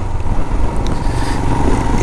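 Motorcycle running on the road while being ridden, a steady low rumble with a haze of road and wind noise over it.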